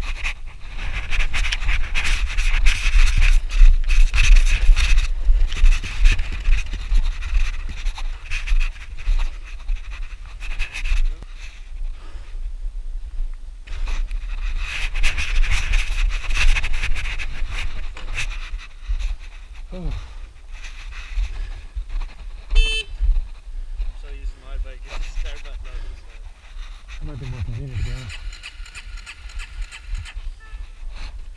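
Wind buffeting a motorcycle-mounted microphone and the rumble of motorcycles moving along a wet road, loudest in the first few seconds and again in the middle. A short high beep sounds about two-thirds of the way through.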